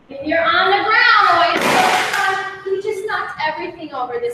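A woman talking, with a brief rushing noise lasting under a second about a second and a half in.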